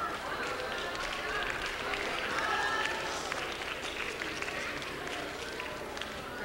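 Audience in an auditorium clapping steadily, with murmuring voices mixed in.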